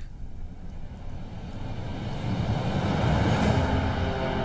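A low rumbling whoosh with no clear pitch, swelling steadily louder: a dramatic sound-effect build in the soundtrack that leads into tense music.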